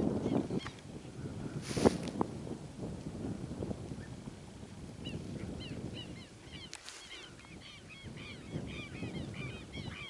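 Birds calling in a rapid flurry of short, harsh, overlapping notes from about halfway through, over faint wind noise, with brief rustles about two seconds in and again near seven seconds.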